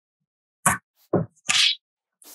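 Three short taps and a brief paper rustle as a hand presses small dot stickers onto a sheet of construction paper on a tabletop.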